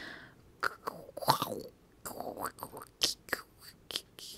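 Faint whispered mumbling and mouth noises close to a microphone, with a few soft, irregular clicks.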